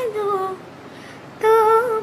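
A woman singing a Bengali song unaccompanied. A phrase slides down and trails off, there is a short pause, and the next phrase starts about a second and a half in.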